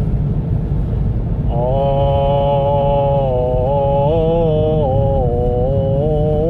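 A voice singing or chanting long held notes that step up and down in pitch, over a steady low rumble.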